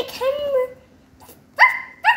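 A pet dog barking: a short, sharp, high bark near the end, with a second following right after.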